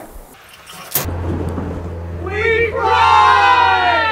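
A man's loud, drawn-out wailing cry that starts about two seconds in, rises in pitch and is held, over a steady low hum. A sharp click comes just before the hum begins.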